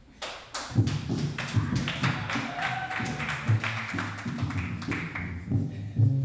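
Tap dancing with a double bass playing along. Quick, sharp taps start just after the opening, and low bass notes come in under them about a second in.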